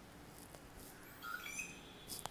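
Faint pen writing on paper, with a brief high squeaky chirp a little past halfway.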